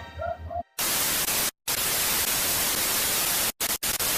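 Television static sound effect: an even hiss of white noise that starts just under a second in and cuts out abruptly for short moments three times, as in a glitch transition. A little background music ends just before it.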